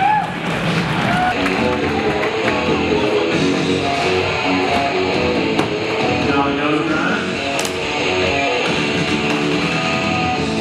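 Background music led by guitar, playing steadily.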